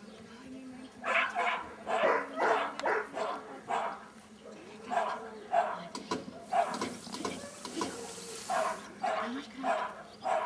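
A small dog barking over and over while held back at the start line, starting about a second in. The barks come in quick runs of two to four with short pauses between them.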